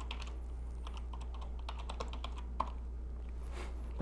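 Typing on a computer keyboard: a run of faint, irregular key clicks, one a little louder about two and a half seconds in, over a steady low electrical hum.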